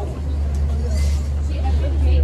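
Faint voices of people talking in the background over a steady deep rumble.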